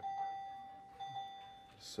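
An electronic patient-monitor alarm chiming: a single high tone struck as a quick double ping about once a second, each ringing and then fading.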